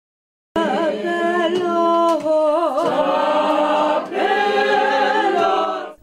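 A small group of people singing unaccompanied, several voices in harmony, in long held notes with vibrato. It starts about half a second in and fades just before the end.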